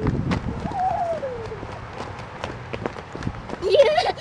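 Running footsteps on a dirt path and pavement, irregular quick steps. A high voice calls out in a long falling tone about a second in, and a high voice cries out again near the end.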